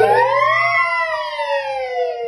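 A toddler's long, drawn-out vocal wail that rises and then slowly falls in pitch, like a siren, and lasts nearly three seconds.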